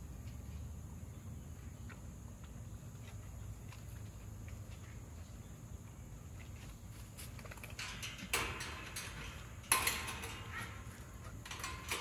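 Metal clanks and rattles from a welded-wire kennel gate being handled and shut. There are faint scattered clicks at first, then a few sharp clatters in the later part, the loudest about ten seconds in.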